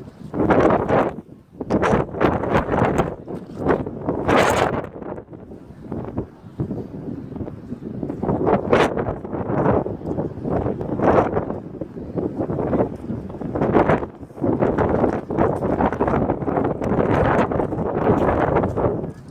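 Gusty wind buffeting the phone's microphone, rising and falling in irregular loud gusts a second or two apart.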